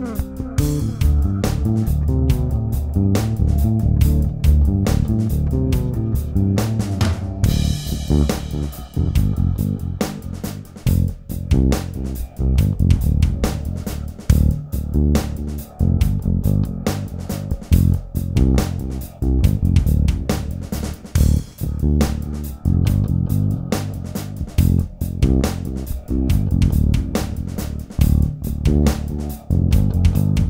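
Warwick Thumb Singlecut six-string electric bass played fingerstyle: a continuous groove of low plucked notes.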